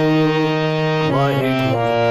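Harmonium playing held reed notes, several sounding together, moving to new notes about a second in.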